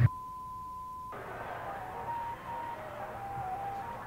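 A steady high beep lasting about a second, then a faint, simple melody of single notes stepping up and down.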